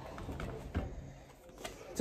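A few faint, short clicks and rustles of a playing card being drawn by hand from a bag.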